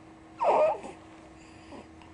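Four-month-old baby giving one short fussing cry about half a second in, grimacing at her first taste of applesauce: a sign she dislikes it.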